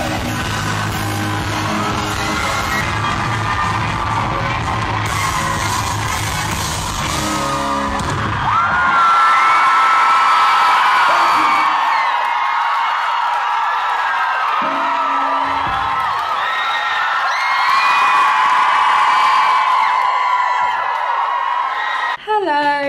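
Live pop-rock band with electric guitars, bass and drums playing at a concert; about eight seconds in the bass and drums stop as the song ends, leaving the audience screaming and cheering loudly.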